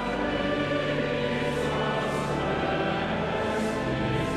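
A choir and congregation singing a hymn, with pipe organ accompaniment.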